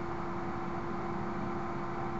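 Steady background hiss with one unchanging low hum running through it: the room and microphone noise of a voice-over recording between sentences.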